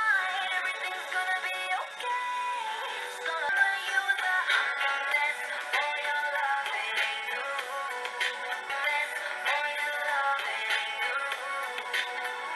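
A recorded pop song playing, with a sung lead vocal over the backing; the sound is thin, with no bass at all.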